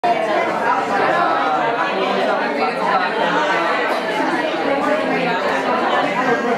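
Many people talking at once around tables: a steady din of overlapping conversations in which no single voice stands out.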